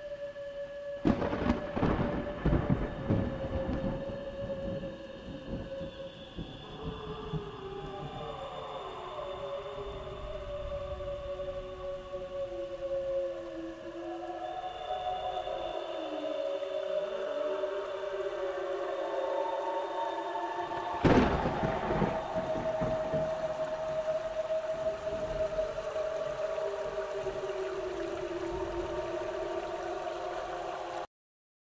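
Ambient music of slow, sustained drone tones that glide in pitch, laid under thunder. A thunderclap with a rolling rumble comes about a second in, and a second, louder crack about twenty-one seconds in.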